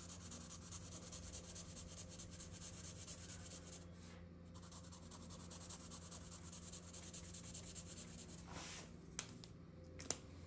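Felt-tip marker rubbing faintly on paper in steady colouring strokes, over a low steady hum. A small click near the end.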